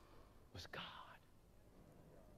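Near silence: room tone, with one faint breath-like sound about half a second in.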